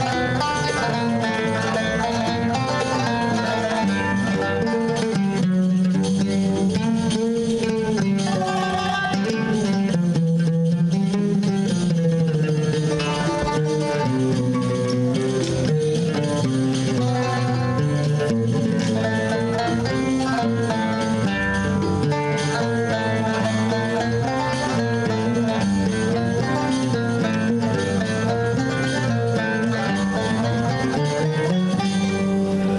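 Instrumental Arabic ensemble music, with an oud and a qanun plucking the melody.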